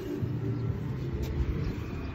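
A low, steady rumble of outdoor background noise.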